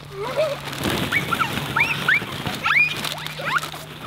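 A bagful of plastic ball-pit balls poured onto a trampoline mat, a continuous rush of tumbling balls starting about a second in. Children shriek over it in several short, rising squeals.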